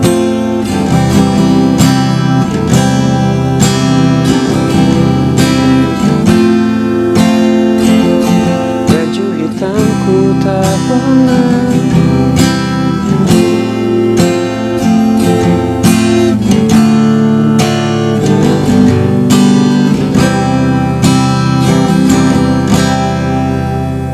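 Acoustic guitar strummed in a steady rhythm, chords changing through a simple verse progression of C, F, Dm and G and ending on C.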